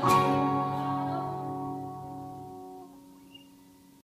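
Acoustic guitars strike a single final chord together, and it rings out and slowly fades away: the song's closing chord.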